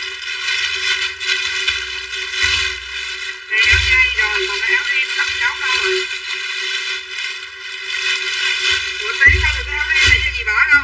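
Garbled, distorted voices over steady background music or tones; no words can be made out.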